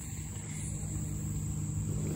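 Steady high-pitched chorus of crickets over a low, steady hum.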